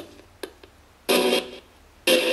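Homemade ghost box scanning radio stations: a click about half a second in, then a short snippet of radio sound about a second in, with low hiss between.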